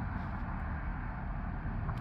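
Steady low rumble of distant road traffic, with no distinct events.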